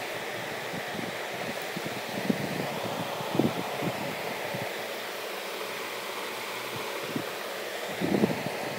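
Steady whooshing background noise, like a running fan, with a few soft low knocks scattered through it.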